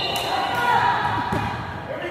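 Indistinct voices of players and spectators echoing in a large gymnasium.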